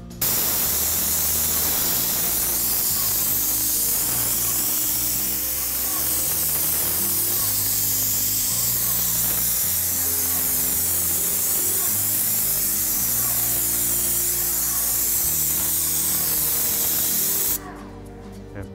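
Hose-fed spray gun spraying a liquid weather-resistive barrier membrane (Vycor enV): a loud, steady, high hiss that starts suddenly and cuts off about half a second before the end.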